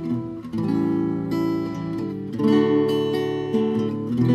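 Steel-string acoustic guitar playing chords, each left to ring, with new chords struck about half a second in and again about two and a half seconds in.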